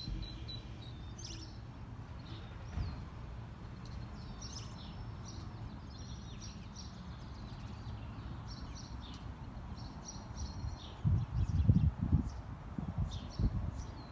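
Outdoor ambience with many short, high bird chirps scattered throughout over a low steady rumble. Loud low rumbling bursts hit the microphone in the last three seconds.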